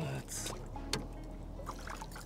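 Hooked peacock bass splashing and thrashing at the water's surface beside the boat as it is drawn in on the line, in short irregular splashes with the loudest near the start.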